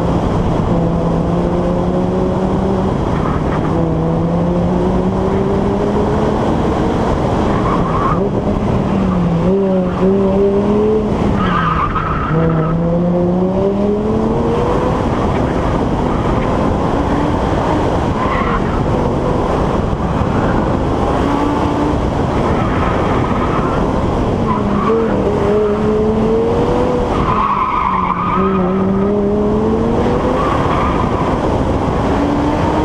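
A car engine pulling up through the revs, its note climbing in long glides and dropping back several times as the driver shifts or lifts off, over a steady rush of wind and tyre hiss on a wet road.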